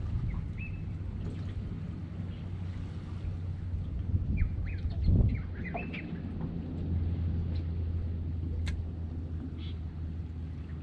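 Birds calling with short chirps and brief gliding notes, most of them around the middle, over a steady low hum. A low thud about five seconds in is the loudest sound.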